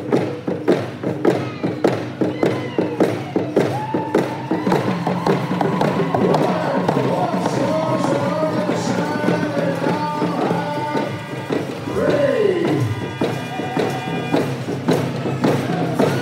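Hand game song: a group of voices singing over hand drums beaten in a fast, steady beat.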